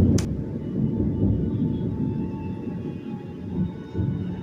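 Deep rumbling sound effect with faint, drawn-out high tones over it, opening with a sharp click and slowly fading.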